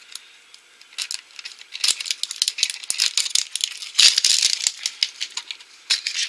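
Hard plastic toy capsule being handled and twisted open, with crackly plastic crinkling and rapid clicks that pick up about a second in and are busiest in the middle.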